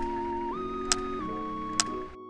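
Background music of held, steady notes that shift in pitch twice, with three sharp ticks evenly spaced a little under a second apart.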